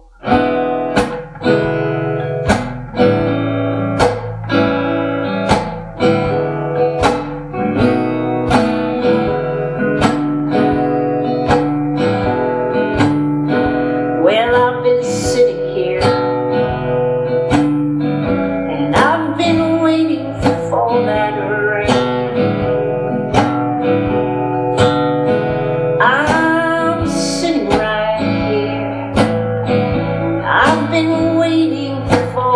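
Acoustic guitar strummed in a steady rhythm, with a woman singing a song over it.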